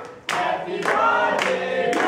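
A group of people singing together with hands clapping along; the voices drop briefly just after the start and come back in.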